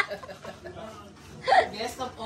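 A quiet pause, then about one and a half seconds in a short, rising vocal sound from a person, trailing off into faint voice.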